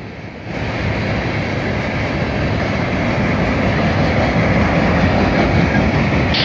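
Freight train cars rolling past: a steady rumble and rattle of steel wheels on the rails, getting louder about half a second in.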